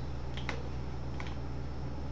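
A few light computer mouse clicks, two close together about half a second in and a fainter one a little later, over a steady low hum.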